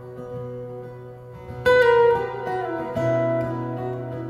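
Solo steel-string acoustic guitar played fingerstyle: picked notes ring over a sustained low bass note, with a loud chord struck about one and a half seconds in and another note struck about three seconds in.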